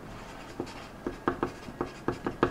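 Handwriting on paper: a run of short scratchy pen strokes starting about half a second in, quickening near the end.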